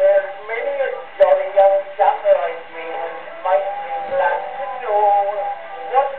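An early acoustic 78 rpm record playing on a horn gramophone: a male music-hall singer with a small orchestra behind him. The sound is thin, with little bass.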